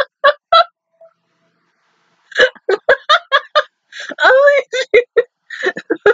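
A woman laughing hard in quick bursts of about four a second. She breaks off about a second in, then starts again with one longer drawn-out note midway.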